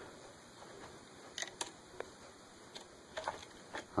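Faint, scattered light clicks and taps of small plastic and metal parts, an antenna nut and plastic mount piece, being handled in the fingers over a radio controller's circuit board.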